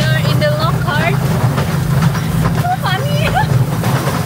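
Steady low rumble of the Wulai tourist trolley, a small open rail carriage running along its narrow track, with women's voices calling out and laughing over it.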